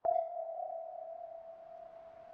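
A single ping-like ringing tone that starts suddenly and fades away slowly.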